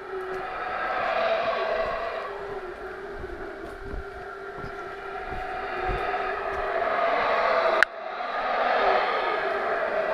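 Yucatán black howler monkeys roaring: a long, deep, swelling chorus that rises and fades twice, breaking off with a sharp click about eight seconds in and then coming back. Low thuds from walking sound underneath in the middle.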